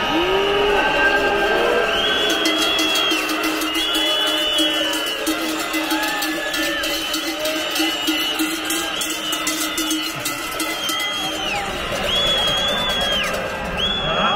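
Din of a large protest crowd, with repeated high piercing tones about a second long each and a low steady tone held under them for most of the time.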